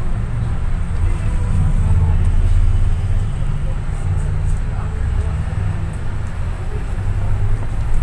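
Bus cabin noise from inside a running city bus: a steady low engine and road rumble, heavier for about a second around two seconds in.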